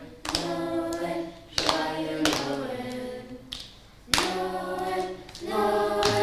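Children's choir singing a song together without accompaniment, in several short phrases. Sharp hand claps mark the start of phrases, about four times.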